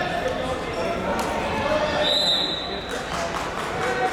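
Many people talking indistinctly in a large, echoing gymnasium, with a few thumps and a brief high squeak about two seconds in.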